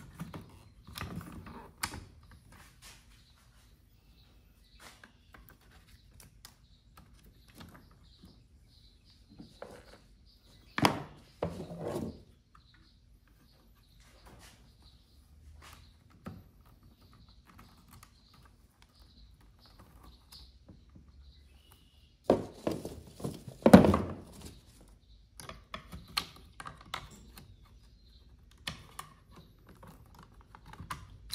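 Handling noises from work inside the open plastic head of a MotorGuide trolling motor: scattered clicks and knocks as wiring and a control board are fitted, with louder clunks about 11 and 24 seconds in.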